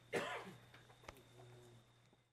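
A single short cough or throat-clear from someone in the room, followed about a second later by a faint click.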